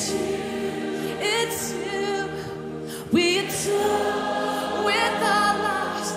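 Christian worship song: sung voices holding notes with vibrato over steady sustained chords, with a louder vocal entry just after the middle.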